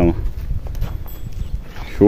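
A goat's hooves and a person's footsteps on dry dirt as the goat is led on a rope, as a few faint irregular steps over a low rumble.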